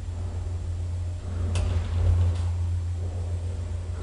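Low steady hum of an old, modernized elevator running, swelling for a moment about a second and a half in, with a single sharp click at about the same time.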